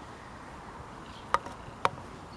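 Two sharp clicks about half a second apart over a steady outdoor background with faint bird chirps.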